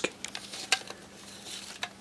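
Handling of a CD and its plastic jewel case: a few light clicks and faint rustling, with the sharpest click a little under a second in.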